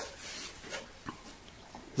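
Faint handling sounds of a plywood block being moved and held against a wooden box: soft rubbing with a couple of light taps in the middle.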